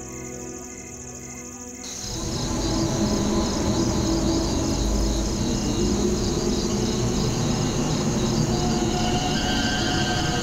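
Soft background music fades out. About two seconds in, a dark, rumbling drone starts, with crickets chirping in a steady rhythm over it: a night-time horror sound bed.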